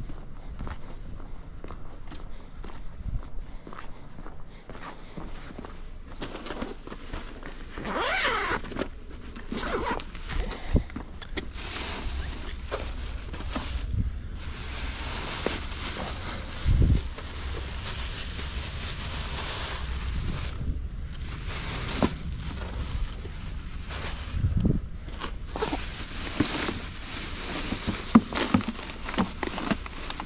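Footsteps on a concrete walk, then an insulated delivery bag being unzipped and handled, with groceries rustling as they are taken out. There are long stretches of rustling, broken by short pauses and a few dull thumps.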